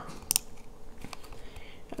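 A few short, faint clicks in a lull between spoken sentences, the loudest about a third of a second in and two fainter ones later.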